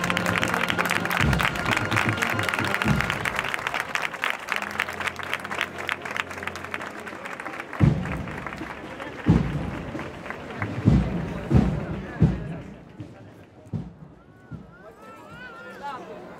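Agrupación musical (cornet-and-drum band) playing a procession march, mixed with crowd applause; it grows thinner about halfway through, with several loud low thumps between about eight and twelve seconds in, then quietens.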